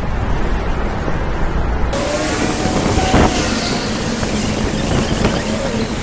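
Continuous city street and traffic noise, a loud steady rumble and hiss. The sound changes abruptly about two seconds in, where the recording is spliced, and faint short sliding tones run through the rest.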